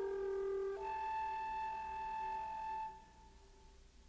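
Contralto voice and alto flute holding long sustained notes together as the closing notes of the movement, with a change of pitch just before one second in. The notes stop about three seconds in, leaving a brief fading tail.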